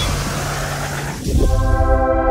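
Intro sound design: a low rumble fades away, then a short rising sweep about one and a half seconds in leads into a held musical tone.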